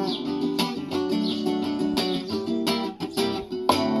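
Solo nylon-string classical guitar playing strummed chords in a steady rhythm, with a brief drop in level about three seconds in.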